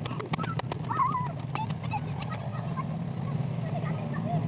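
A short, wavering, high-pitched vocal cry about a second in, with a few sharp clicks just before it and fainter calls later, over a steady low hum.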